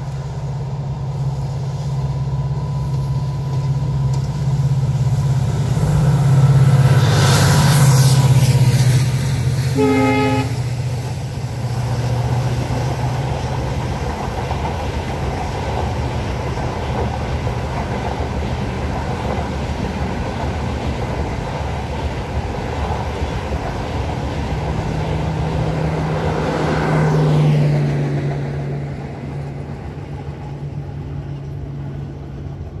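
WDP4B diesel locomotive with its EMD 16-cylinder two-stroke engine running past close by, its steady low drone loudest around seven to nine seconds in, with one short horn blast about ten seconds in. Then the LHB coaches roll past with steady wheel-and-rail noise, swelling once more near the end before fading.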